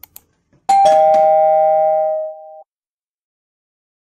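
Two-note doorbell ding-dong chime sound effect: a higher note followed a moment later by a lower one, both ringing for about two seconds before cutting off. Two quick clicks come just before it.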